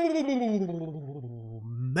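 A man's long drawn-out vocal "ohhh", the pitch sliding down from high and then held low for over a second before breaking off near the end.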